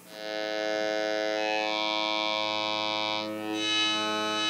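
A digital oscillator module in a modular synthesizer sounding one steady drone note, rich in overtones. Its upper tone shifts partway through as the oscillator scans through different wave shapes.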